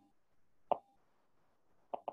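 Two short soft mouth clicks, one a little under a second in and another at the very end, in an otherwise quiet pause.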